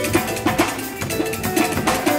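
Live band music: a drum kit and percussion keeping a steady, quick rhythm under bass guitar and other pitched instruments.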